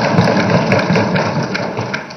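Legislators thumping their wooden desks in approval, a dense patter of many quick knocks that dies away toward the end.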